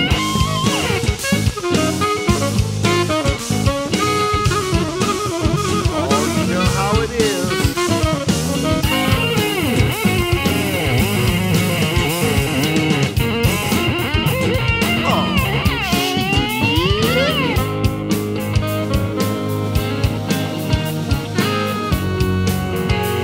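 Rock band playing an instrumental section: an electric guitar lead with bent notes over drum kit and bass. A long held high note in the middle gives way to swooping tremolo-bar dives and rises, then the band settles into a steadier riff near the end.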